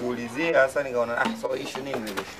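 Speech: a person talking in a run of short phrases.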